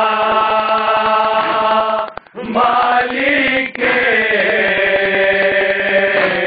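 Men chanting a nauha (Shia lament) in long held notes, led by one reciter. The chant breaks off briefly about two seconds in and then resumes. Under it runs the steady rhythmic slapping of hands beating on chests (matam).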